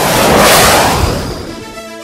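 A whoosh transition sound effect that swells to a peak about half a second in and fades out by about a second and a half, over background music.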